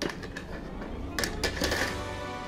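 Rustling and light clicks of plastic model-kit parts and their bags being handled, with a louder rustle about a second in.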